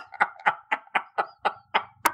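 A person laughing: a run of about eight short, breathy bursts, about four a second.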